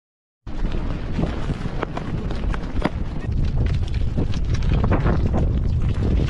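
Strong wind buffeting the microphone, with a dense scatter of sharp ticks and knocks from volcanic lapilli and pyroclastic fragments raining down on people and gear during an eruption. It starts abruptly about half a second in.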